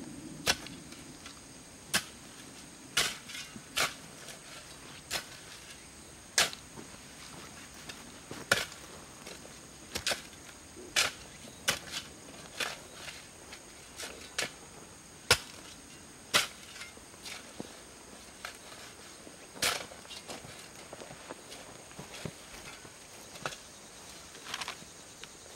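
Shovel blade striking and chopping into loose soil as the mound is shaped: sharp, irregular knocks about once a second.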